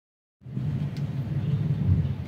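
Car engine running with a low, steady rumble on a film soundtrack, heard through a TV speaker; it cuts in suddenly about half a second in.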